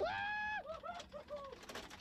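A person's voice without words: a high cry held for about half a second, then a few short laugh-like syllables.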